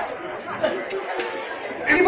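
Scattered voices and chatter from a small audience in a room, in the lull between the comedian's lines.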